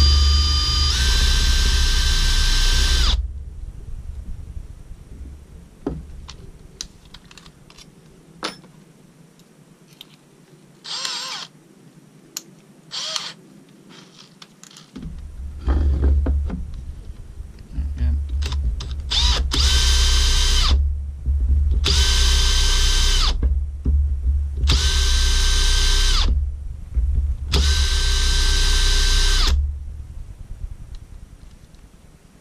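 Handheld power drill driven in short runs through the holes of a 3D-printed plastic holder to mark out hole positions. The first run spins up with a rising whine and lasts about three seconds. Quieter knocks and handling noise follow, then four more runs of about a second and a half each in the second half.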